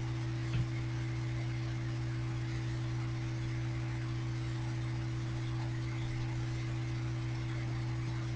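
Steady low electrical hum, like mains hum on the recording, with one faint click about half a second in.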